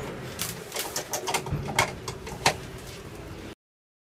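Scattered sharp clicks and knocks from plugs, cables and switches being handled at an electrical distribution box, over a faint background hum of the hall. The sound cuts off abruptly about three and a half seconds in.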